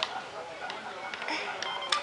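Toy cash register in use: a few light plastic clicks and a brief scrape as a toy credit card is pushed into its card reader, with short electronic beeps starting near the end.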